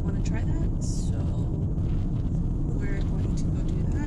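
Steady low rumble of a car driving, heard from inside the cabin: road and engine noise at a constant level.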